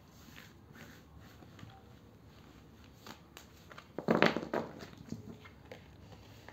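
Tarot cards being gathered up off a cloth-covered table by hand: soft sliding and rustling of the cards, with a louder burst of handling about four seconds in.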